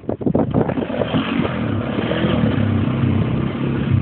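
Small off-road ATV engine running under throttle as it drives along a sandy dirt track. A few knocks and rattles sound in the first second, then the engine note settles into a steady drone.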